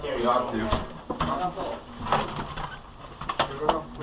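Indistinct voices talking, with several sharp clicks and knocks as a glass exit door is pushed open and passed through.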